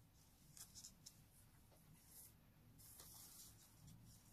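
Near silence with a few faint, short rustles of folded origami paper being handled and shaped by the fingers.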